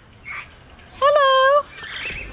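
Raggiana bird of paradise giving one loud, nasal call about a second in, rising sharply at the start and then held at one pitch for just over half a second.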